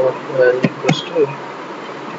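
A man's voice murmuring indistinctly over a steady buzzy hum from the recording, with a few sharp computer-keyboard clicks as code is typed; the murmur stops a little over a second in, leaving the hum.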